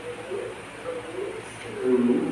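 A dove cooing: a run of short, low coos, the loudest near the end.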